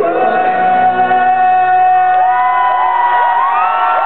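A man singing one long held note into a microphone over an acoustic guitar. About two seconds in, a crowd starts cheering and whooping over the end of the note.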